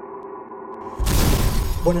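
A steady electrical hum, then a loud rushing noise lasting about a second that starts about a second in. Near the end a man's voice begins through the microphone.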